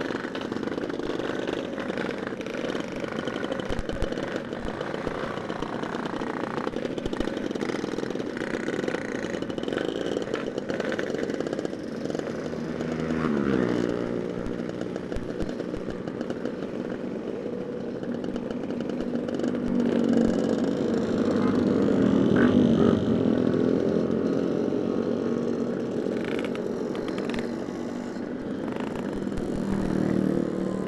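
Two-stroke motorcycle engines, Yamaha RX-King type, idling and being revved among a group of bikes. About halfway through one engine's pitch falls steeply. The running gets louder and busier in the last third as the bikes get moving.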